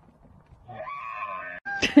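A drawn-out animal call with a steady pitch, lasting about a second, followed near the end by a short burst of laughter.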